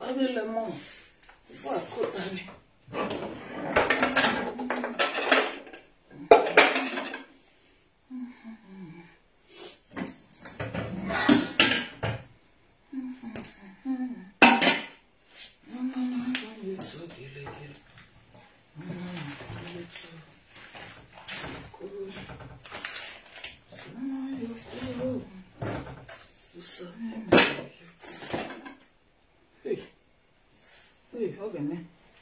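Metal pots and pans clattering and knocking as they are pulled out of a low kitchen cupboard and set down on a tile floor, with several sharp clangs spread throughout. A person laughs near the start, and mumbled speech runs in between the clatter.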